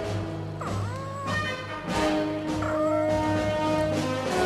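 Soundtrack music with long held notes, over which a small creature's cooing voice twice glides up and down in pitch, each call under a second long: the voice of a Mogwai.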